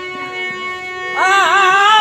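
Jhumur folk song: a harmonium holds a steady chord, and about a second in a man's voice enters on a long sung "aa" with a wavering, ornamented pitch.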